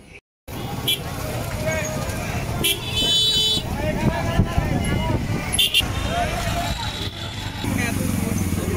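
Busy road with crowd chatter over passing motor traffic; a vehicle horn honks briefly about three seconds in. The sound cuts in after a short gap at the start.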